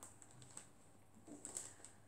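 Faint handling of paper sticker sheets: a few soft ticks and rustles, about half a second and again about a second and a half in, otherwise near silence.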